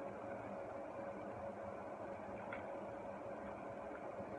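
Steady low room hum with a faint continuous tone, and one faint click about two and a half seconds in.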